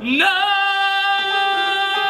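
Male singer belting one long held note in a musical theatre song, sliding up into it after a short breath.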